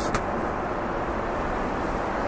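Steady in-flight cabin noise of a Boeing 777-300ER airliner: an even rush with a low rumble underneath, with no distinct events.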